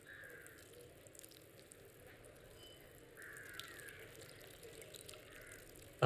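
Faint outdoor ambience with a crow cawing about three times in the distance.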